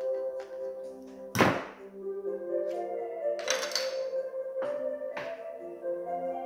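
Background music with a steady melody, over handling sounds as a disposable vape's casing is pried apart with scissors and a pin: one loud thunk about a second and a half in, a brief scrape around the middle, and a few lighter clicks.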